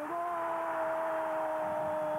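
A football match commentator's long, drawn-out "gol" shout: one held note, falling slightly in pitch, over a stadium crowd cheering.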